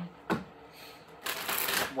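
A deck of tarot cards being shuffled by hand: a light tap about a third of a second in, then a dense flutter of cards lasting just under a second near the end.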